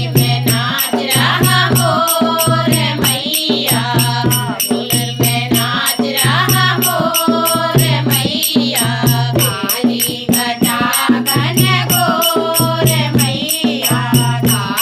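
Women singing a Hindi devotional bhajan (nirgun bhajan) together, with a dholak hand drum and sharp strokes keeping a quick, steady beat, likely hand claps.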